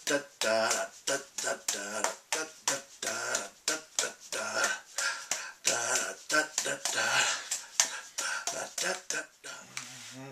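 A man's voice making short, quick vocal sounds in a steady rhythm, about three or four a second, each with a sharp click at its start, like vocal percussion.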